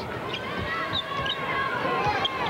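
Arena crowd murmur during a basketball game, with a basketball being dribbled on the hardwood floor.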